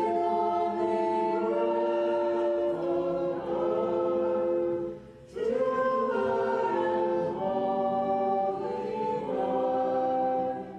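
A small group of voices singing a slow hymn in long held notes, with a brief pause for breath about five seconds in.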